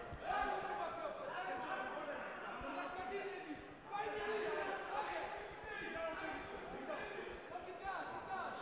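Several voices shouting and calling out across a large hall, overlapping and echoing, with a few dull thuds among them.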